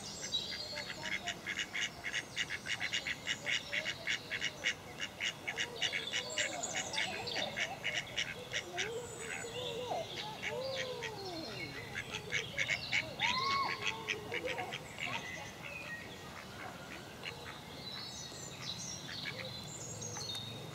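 Birds calling at a duck pond. A fast, even run of high, dry notes, about five a second, fills the first half. Several arching, rising-and-falling calls come in the middle, and scattered high calls follow near the end.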